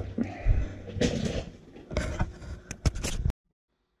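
Handling noise: rustling and scraping with a cluster of sharp clicks and knocks near the end, as a freshly printed plastic part is taken from the printer and moved. The sound cuts off abruptly to silence shortly before the end.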